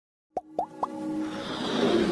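Logo-intro sound design: three quick plopping pops, each sweeping up in pitch, about a quarter second apart, followed by a music swell that builds steadily in loudness.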